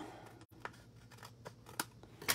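Small craft scissors trimming the excess off the edge of a piece of cardstock: a few faint, short snips.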